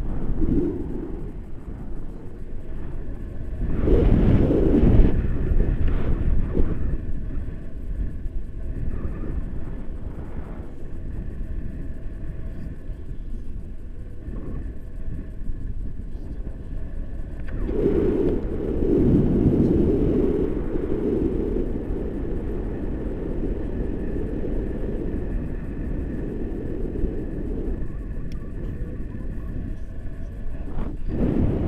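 Wind buffeting an action camera's microphone in flight under a tandem paraglider: a steady low rumble that swells in a stronger gust about four seconds in and again for a few seconds from about eighteen seconds.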